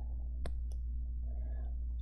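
Two quick clicks about a quarter of a second apart, over a steady low electrical hum.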